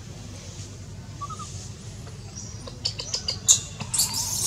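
Baby macaque giving a run of short, high-pitched squeals and cries in the last second and a half, in distress as its mother handles it roughly.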